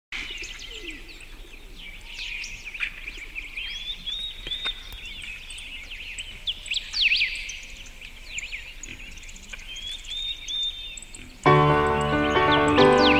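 Several songbirds singing together, overlapping chirps and whistled phrases. Near the end, music starts loudly over them.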